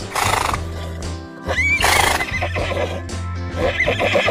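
A horse neighing, with the loudest whinny, a wavering high call, about two seconds in and a shorter one near the end, over background music with a steady low bass.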